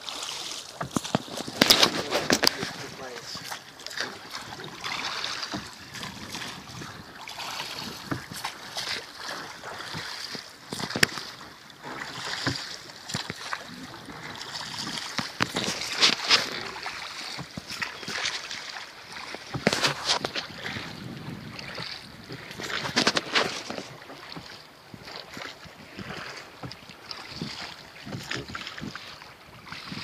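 Wooden rowboat under oars: the oars knock in their tholes and splash in the water, with a cluster of knocks and splashes recurring every few seconds over a steady wash of water and wind.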